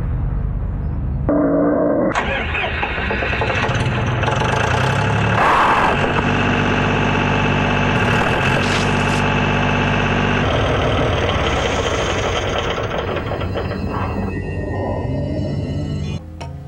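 John Deere loader tractor's diesel engine running, its note changing a few times.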